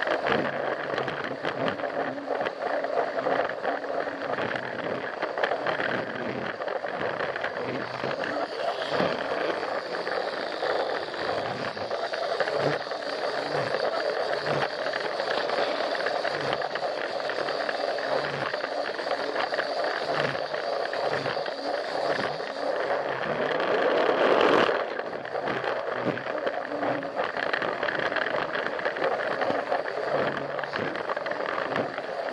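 Plarail toy train's small battery motor and plastic gears running steadily, heard up close from on board, with irregular clacks as the wheels run over the plastic track. The sound swells for a moment about five seconds before the end, then drops back suddenly.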